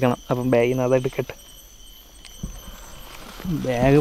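Crickets chirping in a high, evenly pulsing trill, heard on their own in a pause between a man's words about a second in, with a low bump or two of handling noise.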